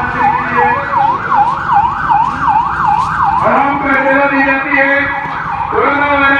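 Police vehicle siren sounding in a fast yelp, its pitch sweeping up and down about three times a second. About halfway through it changes to a steadier, lower tone.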